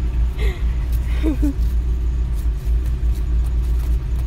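Honda car's engine idling, a steady low rumble heard from inside the cabin at a drive-through stop, with faint voices briefly about half a second and a second in.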